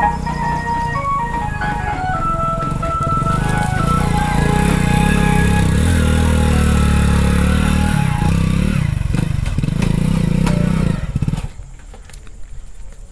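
Background music with a keyboard melody over a motorcycle engine running as the bike is ridden off. The engine rumble builds about three seconds in and drops away near the end.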